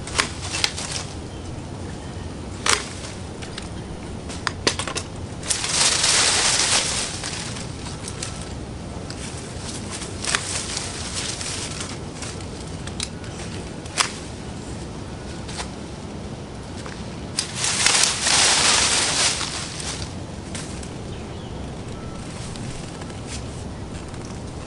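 Woody shrub stems snapping one at a time as a shrub is cut out at its base, with two longer bouts of leafy rustling as cut branches are pulled away, about six seconds in and again around eighteen seconds in.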